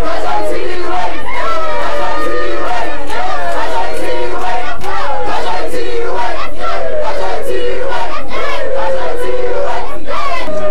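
A crowd shouting and yelling together with many voices overlapping, loud enough that the recording is overloaded.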